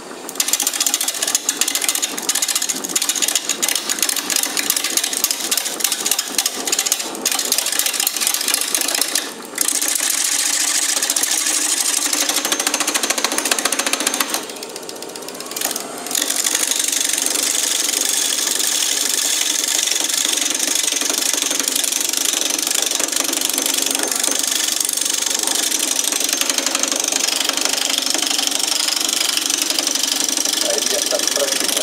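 Wood lathe spinning a wooden bowl blank while a hand-held turning tool cuts it: a continuous rough scraping hiss of the tool in the wood. It is choppy for the first several seconds, eases off briefly about halfway through, then runs steady.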